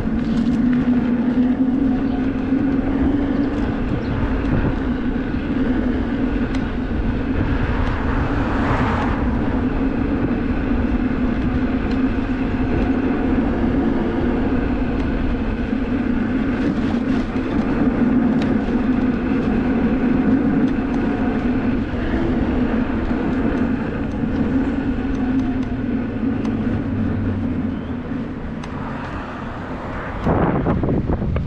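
Electric unicycle rolling along a street at a steady speed: a constant hum from its hub motor over tyre rumble and wind on the microphone. A whooshing swell of noise comes about nine seconds in and again near the end.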